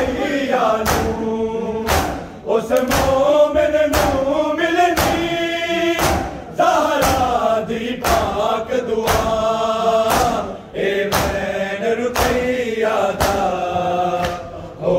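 A crowd of men chanting an Urdu noha (lament) together in a loud chorus, the lines sung in long held phrases, with rhythmic slaps of hands on bare chests (matam) striking the beat.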